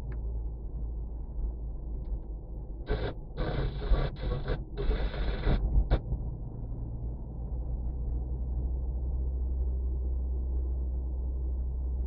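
Steady low rumble of a car driving, heard from inside the cabin. From about three seconds in, for about three seconds, broken bursts of louder gritty noise come as the tyres run over a dusty, gravelly patch of road.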